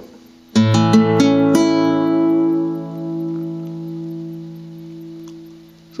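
Nylon-string classical guitar playing an A major chord from the D string up. Four strings are plucked one after another, starting about half a second in, and the chord then rings and slowly fades.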